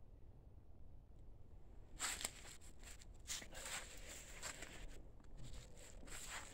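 Faint footsteps and rustling in dry leaves and grass, starting about two seconds in after a near-silent opening, with irregular soft crunches.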